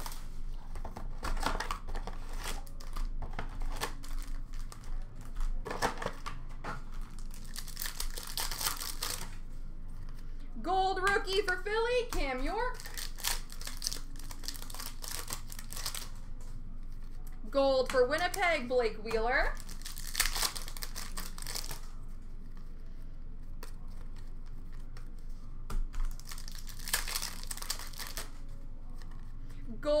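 Upper Deck hockey card pack wrappers crinkling and being torn open, with three longer tearing bursts and cards shuffled in between. A voice speaks briefly twice.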